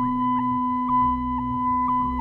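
Sustained drone of steady pure, electronic-sounding tones: one strong low tone with fainter higher tones above it, dotted with short faint blips, over a low uneven rumble.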